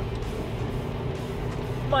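Subaru Impreza's turbocharged flat-four engine running steadily at constant revs, a low even drone with road noise.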